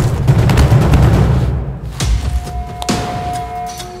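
Action-film background score with heavy booming hits and punch impact effects, densest in the first two seconds. Two more sharp hits land about two and three seconds in, while a held tone sounds over the second half.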